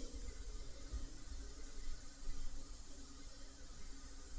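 Faint, steady background hiss with a low hum: the recording's room tone in a gap in the narration, with no distinct sound event.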